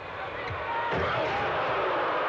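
Basketball arena crowd noise: a dense murmur of many voices that swells over the first second, then holds steady. A man laughs near the end.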